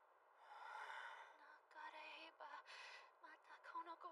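Very faint sound: a long breathy exhale, like a tired sigh, then soft background music beginning with short held notes.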